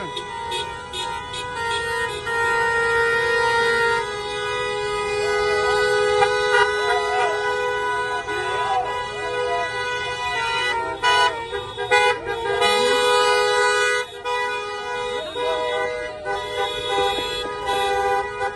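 Car horns held in long, overlapping blasts as a slow line of rally cars passes, with people's shouting voices mixed in.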